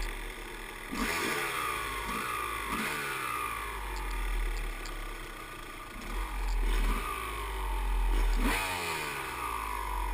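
Dirt bike engine revving up and dropping back again and again as the throttle is worked and the gears are changed while riding a trail, with the pitch climbing several times, strongest about a second in and again near the end.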